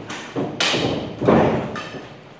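Thuds and knocks from stick sparring on a padded boxing ring, with one fighter going down onto the mat. Several sharp hits, the loudest about half a second in and again about a second and a quarter in.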